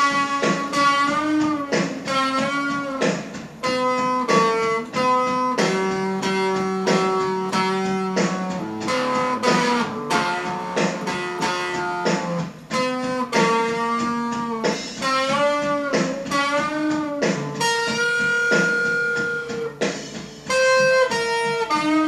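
Electric guitar playing a single-note lead melody, with string bends and vibrato on the held notes.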